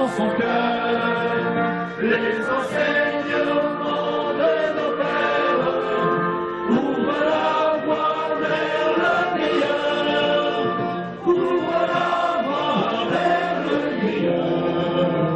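A street group of men and women singing a song together from printed song sheets, their voices holding and changing notes continuously.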